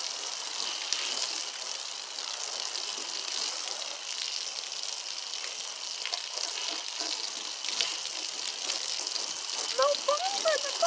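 Garden-hose foam gun spraying a steady stream of soapy water against a car's body panels and glass, a continuous hiss and spatter. The car wash soap is barely foaming, so the gun throws a runny, watery spray rather than thick foam.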